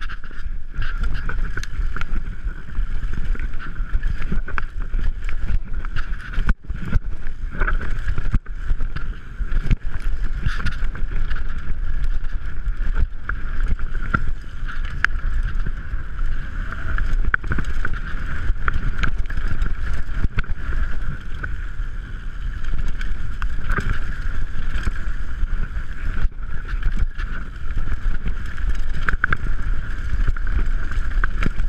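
Orange 5 full-suspension mountain bike descending a dirt trail: a constant rumble of tyres and wind on the camera's microphone, with frequent knocks and rattles as the bike jolts over roots and rocks.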